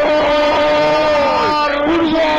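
A radio commentator's long drawn-out goal cry, the vowel of 'gol' held loud on one high pitch without a break.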